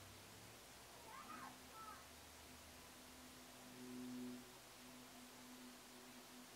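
Near silence: faint room tone, with a faint brief wavering cry about a second in and a faint low hum that swells around four seconds.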